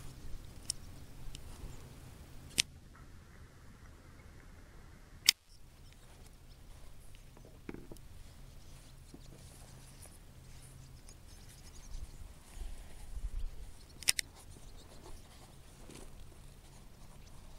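Faint high twittering of swallows under a low steady hum, broken by a few sharp clicks from camera handling.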